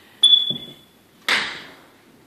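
A click followed by a single clear, high-pitched ping that rings out and fades within about a second, then a short noisy rush about a second later.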